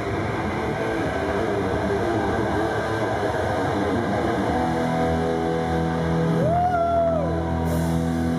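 Rock band playing live, with loud distorted electric guitars through amplifiers. About halfway through, the busy playing gives way to held, ringing chords, and near the end one note is bent up, held and let back down.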